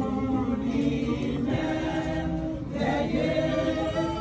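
A women's church choir singing together, the voices holding long sustained notes.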